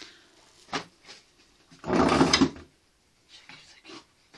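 Dough being handled on a board: a short knock under a second in, then a louder rubbing thump about two seconds in.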